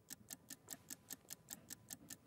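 Faint, evenly spaced ticking, about five ticks a second, from the ticking sound effect of an on-screen countdown timer.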